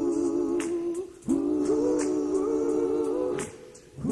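Live pop-soul music: several voices holding close-harmony chords in swells of about two seconds, each followed by a short break, with sparse light percussive ticks above.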